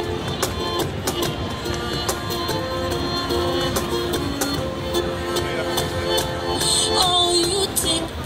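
Small acoustic band playing an instrumental passage: cello and violin holding long notes over electric bass and strummed ukulele, with a cajon keeping a steady beat.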